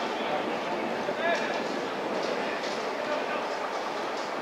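Distant, indistinct voices of football players calling across the pitch over a steady outdoor noise, clearest about a second in.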